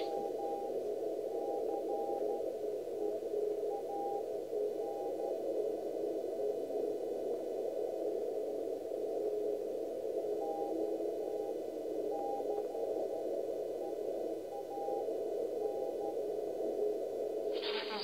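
Shortwave receiver audio through a narrow filter: a band of static with a Morse code tone keying on and off irregularly over it.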